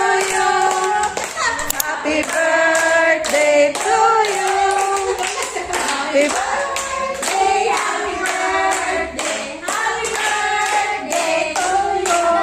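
A group of voices, adults and children, singing a song together while clapping their hands in a steady beat.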